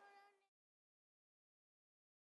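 Near silence: a faint held tone fades away in the first half second, then total silence.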